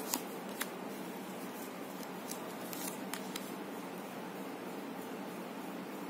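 Tarot cards being handled, drawn from the deck and laid on a cloth-covered table: a few faint, irregular clicks and snaps over a steady background hiss.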